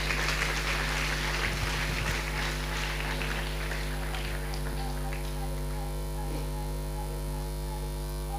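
Soft background music of long held tones over a steady electrical hum from the sound system. A faint noisy texture sits under it in the first few seconds.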